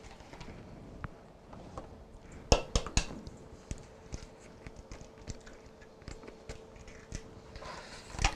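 An egg cracked on the rim of a mixing bowl: two sharp taps about two and a half seconds in, followed by small clicks of shell and handling.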